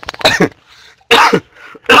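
A man coughing three times, the coughs a little under a second apart.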